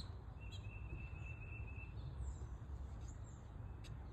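Quiet outdoor ambience: a low steady rumble on the phone's microphone, a thin steady high whistle lasting about a second and a half near the start, and a few faint high chirps later on.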